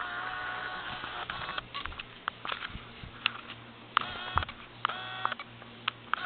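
Saint Bernard whining close to a phone microphone in high, thin whines: one held steady over the first second and a half, then two short ones about four and five seconds in. Clicks and knocks of the phone being handled and bumped against the dog run throughout.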